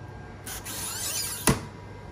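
Handling noise: a short rustle starting about half a second in, ending in a single sharp click.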